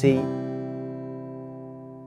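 Epiphone Hummingbird acoustic guitar strummed once on a C major chord. The chord rings out and fades slowly.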